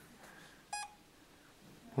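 A single short electronic beep from a handheld EMF meter, signalling a spike in its reading.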